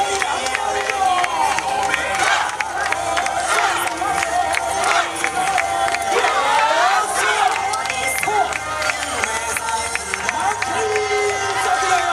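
A yosakoi dance team's voices chanting and shouting over the dance music, with scattered sharp clacks.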